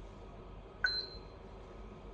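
A HOMSECUR video intercom indoor monitor's touchscreen gives one short electronic beep about a second in, confirming a press of its Back button.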